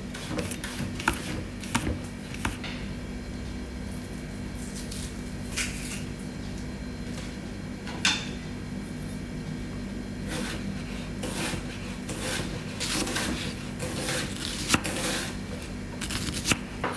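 Kitchen knife slicing garlic cloves on a cutting board: irregular light taps and knocks, coming more often in the second half, over a steady low hum.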